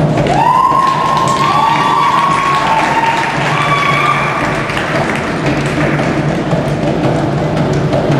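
Four galvanized steel trash cans struck as drums in an ensemble rhythm, a dense steady beat. About half a second in, several high held cries rise over the drumming and fade out by about four and a half seconds.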